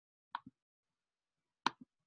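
Two clicks of a computer mouse, each a press followed quickly by a release, about a second and a third apart.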